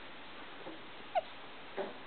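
A baby's brief vocal sounds: a short squeak falling in pitch about a second in, then a short grunt near the end.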